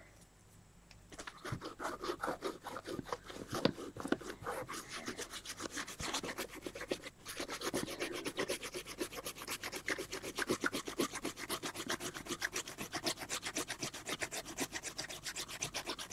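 Fast back-and-forth rubbing on a painted paper page, lifting dried masking fluid from under black acrylic paint. The rubbing starts about a second in and goes on at several strokes a second.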